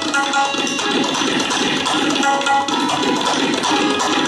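Tabla solo: rapid, dense strokes on the tabla, over a harmonium playing the lehra, a repeating melodic cycle of held reed tones that keeps the time cycle.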